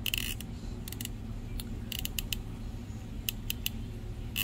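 Hot glue gun's trigger being squeezed, its feed mechanism pushing the glue stick through with short clicks and creaks that come in irregular groups: one at the start, one about a second in, a cluster around two seconds and another near the end.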